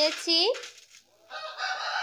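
A chicken calling: a short rising call about a quarter of a second in, then a long, rough, drawn-out call from about two-thirds of the way through.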